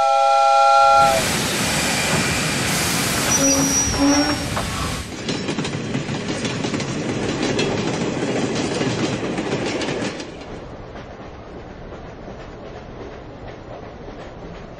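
Steam locomotive whistle sounding a chord of several notes for about a second, followed by the train running along the track. The running noise drops to a quieter rumble about ten seconds in.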